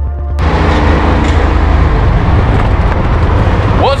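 Music cuts off just under half a second in, giving way to the driving noise of an open golf cart: a loud, steady rush of wind and road noise with a low rumble.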